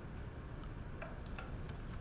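A few faint, irregular clicks over low room tone.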